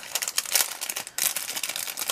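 Clear plastic packaging around a pack of markers crinkling and crackling as it is handled, in a run of irregular sharp crackles.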